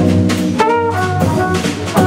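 Live jazz quartet: a trumpet plays a phrase of several short notes over drum kit, double bass and guitar, with drum strokes through it.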